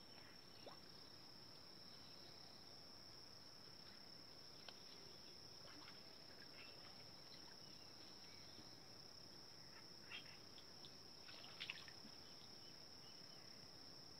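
Steady high-pitched chorus of crickets, faint throughout, with a few brief faint noises about ten and eleven-and-a-half seconds in.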